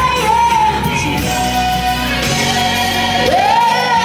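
A boy singing a worship song into a microphone over sustained instrumental accompaniment. He holds a long note, then swoops up into a high held note near the end.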